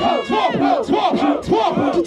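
Voices chanting "yeah, yeah" in a steady rhythm, about four a second, through a microphone with a crowd joining in.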